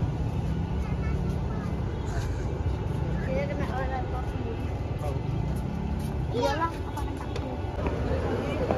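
Steady low rumble of street traffic, with snatches of people's voices about three seconds in and again near the end.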